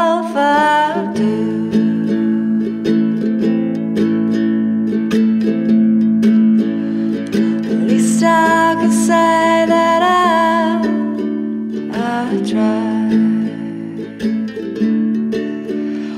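Studio recording of an acoustic folk song: a guitalele, a small six-string guitar tuned like a ukulele, picked in a steady pattern, with a woman's voice singing held lines over it in places.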